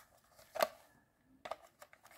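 A few light clicks and taps of a hard plastic toy capsule being handled, the sharpest a single click just over half a second in, with fainter clicks about a second and a half in.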